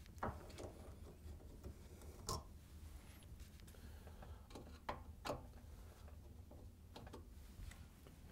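A handful of faint, scattered clicks from a Phillips screwdriver turning out the screws that fasten a dishwasher's top mounting brackets to the countertop.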